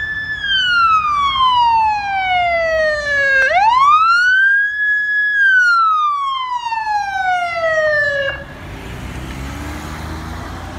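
Electronic emergency-vehicle siren on the wail setting, from a fire battalion chief's SUV. It goes through two slow cycles, each sweeping up to a high held pitch and then gliding slowly down, and cuts off suddenly near the end, leaving traffic rumble.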